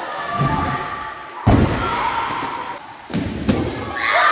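Skate wheels rolling on wooden skatepark ramps, with a hard thud of a landing about a second and a half in and two smaller knocks near the end, over the chatter of a crowd of children.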